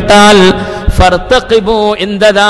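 A man's voice chanting Arabic in a drawn-out melodic recitation, holding and sliding notes in short phrases.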